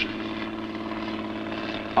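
A steady engine-like drone holding one pitch, with a fine rapid flutter.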